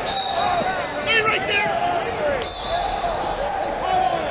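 Wrestling shoes squeaking again and again on the mats, over the voices of a crowd in a large hall. A thin high steady tone sounds twice, briefly near the start and again about halfway through.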